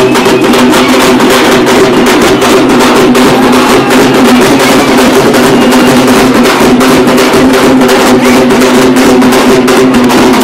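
Loud procession drumming: rapid, unbroken drumbeats over a steady droning tone.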